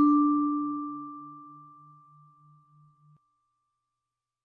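A single bell-like music-box note struck once and ringing down slowly, over a faint low tone that pulses about three times a second; both stop about three seconds in.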